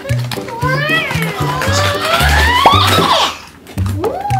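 Background music with a steady, repeating bass line, over a child's excited voice making rising, wordless exclamations.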